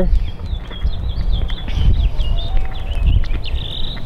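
Wind buffeting the microphone in a low, gusting rumble, with small birds chirping high and thin in the background.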